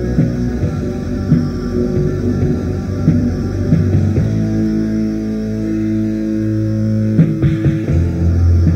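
Raw ambient black metal from a 1995 cassette demo: dense, low-pitched distorted music that settles into a long held chord about four seconds in, with a short break in the texture near the end.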